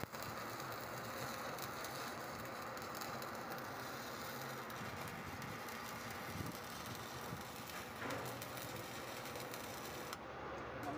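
Electric arc burning against a steel shaft, a steady crackling hiss, cutting away a seized ball bearing.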